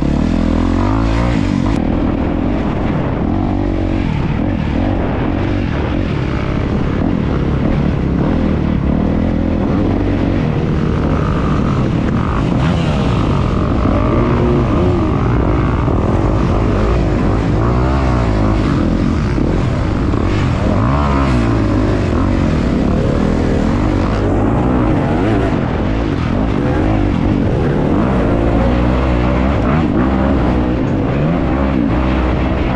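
Honda CRF250R four-stroke single-cylinder dirt bike engine being ridden hard without a break, its pitch rising and falling over and over as the throttle is worked on and off.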